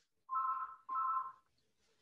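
Telephone ringing: two short electronic beeps in quick succession, each made of two steady tones sounding together.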